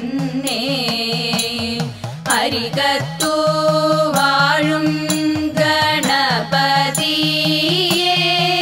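Women's group singing a Thiruvathirakali song, a Ganapathi stuthi in Malayalam, in slow melodic lines. Sharp hand claps mark the beat of the song.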